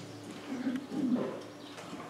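Two short, low cooing calls, like a dove's, about half a second and a second in, just after the last held chord of the hymn dies away.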